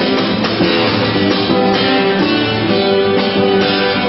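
Acoustic guitar played live, strummed chords with a steady rhythm.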